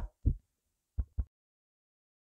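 A short low thump, then two more close together about a second in, like a heartbeat's double beat, then dead silence.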